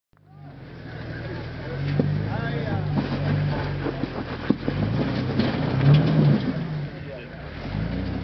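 Off-road vehicle's engine running at low revs, its note rising and falling as it is throttled over rough ground, with scattered sharp knocks and clunks.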